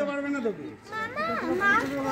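Speech only: voices talking, among them a young child's voice.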